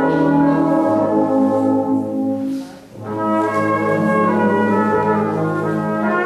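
Live brass band with a cornet soloist playing sustained chords. The sound thins out and drops briefly a little before the middle, then the full band comes back in.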